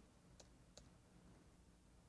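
Three faint computer keyboard key clicks in about the first second, the last one entering a typed command, over near-silent room tone.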